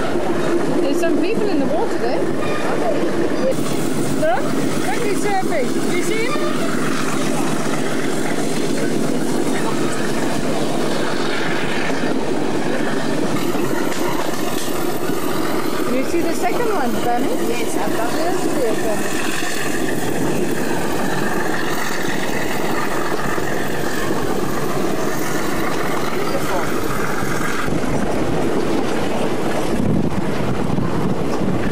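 Steady rumble and rattle of a moving passenger train, heard from inside the carriage.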